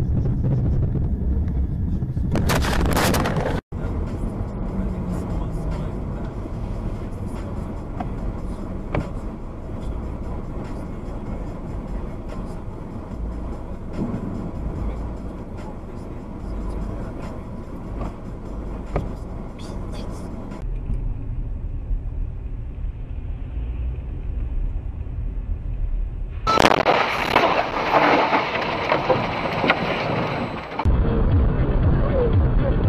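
Dashcam sound from inside cars driving on snowy roads: a steady low engine and road rumble. It is broken by a short loud noisy stretch about three seconds in, cut off by a brief dropout, and by a longer loud noisy stretch near the end.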